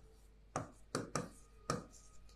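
Stylus tapping on the glass of an interactive touchscreen display while handwriting, heard as a handful of light, sharp taps at uneven intervals.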